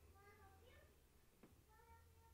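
Faint meowing of a house cat in a near-silent room: a couple of short meows early on and another near the end, with one soft tick between them.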